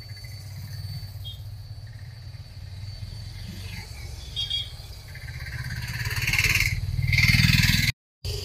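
A car approaches along the road and passes close, its engine and tyre noise growing louder to a peak near the end. A steady low rumble of traffic lies underneath.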